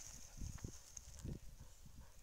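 Faint, scattered footsteps on dry leaves and moss: a few soft thuds and light rustles.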